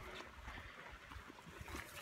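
Faint stream water running steadily, with a few soft low thumps from footsteps on the trail.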